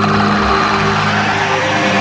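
Electronic music: held synthesizer chords with a noise sweep that swells and then fades over about a second and a half.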